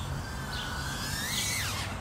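Motor and propeller whine of a Pavo Pico micro FPV quadcopter with 45 mm props. The pitch climbs slowly, then drops quickly near the end as the throttle comes off.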